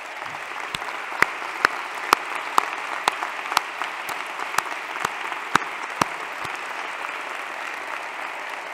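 Audience applause, steady throughout, with single claps from one nearby clapper standing out at about two a second.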